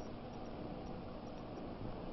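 Steady background hiss of an old film soundtrack, with a faint low hum, in a pause between lines of dialogue.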